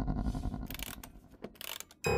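Low rumbling horror-film drone with a few short, dry scrapes and clicks, dying away near the end.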